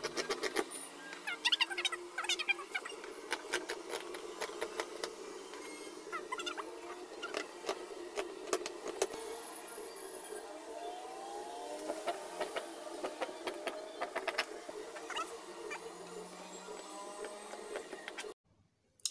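Scissors cutting through cotton fabric on a table: a run of irregular snips and blade clicks as the cut follows a marked line.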